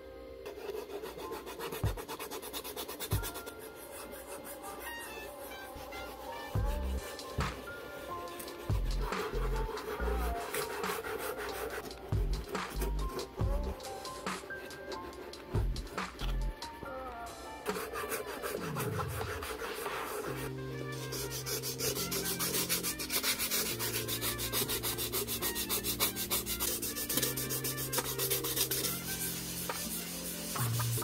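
A sanding stick and sandpaper rubbed back and forth over the leather upper of a Nike Air Jordan 1 High, scuffing the leather in quick repeated strokes. The strokes grow faster and brighter about two-thirds of the way through. Background music with a low bass line plays underneath.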